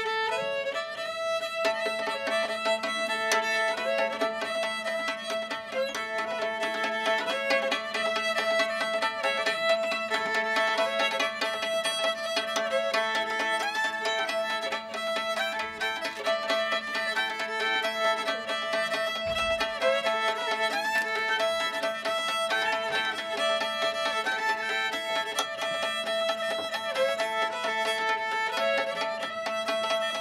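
A fiddle tune bowed over steady drone notes, while a second player beats the lower strings with a pair of fiddlesticks (thin sticks), adding a rhythmic percussive pulse to the bowed melody.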